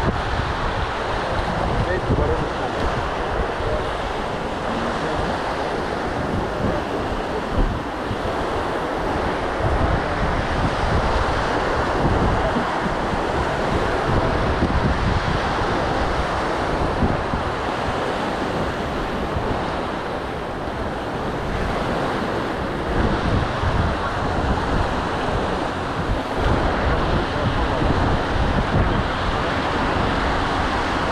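Small sea waves breaking and washing up a sandy beach in a steady surf, with wind buffeting the microphone.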